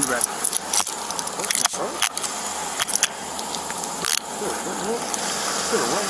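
Clothing rubbing against a body-worn camera, with several sharp clicks and metal jingling as handcuffs are brought out and readied.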